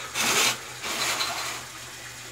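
Tap water splashing over a safety razor as the blade is rinsed, in two rushes: a short, louder one near the start and a longer, weaker one just after.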